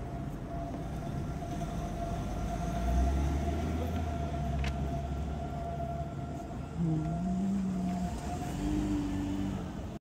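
Slow street traffic: a taxi creeps past at close range, its low engine rumble swelling about three seconds in and easing off a few seconds later. A faint steady hum runs underneath, and a few short low tones sound near the end.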